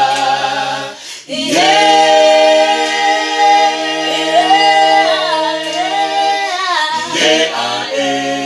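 A small group of men's and women's voices singing a cappella in harmony, holding long sustained chords. The singing drops out briefly about a second in, then comes back, with the voices sliding between notes later on.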